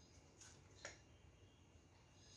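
Near silence: room tone, with two faint short clicks about half a second apart.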